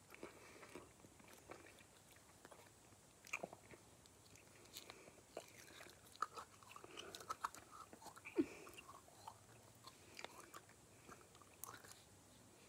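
Faint sticky squelches and small clicks of glittery purple slime being handled: pulled out of its plastic tub and stretched into long strands. The slime is still a little sticky.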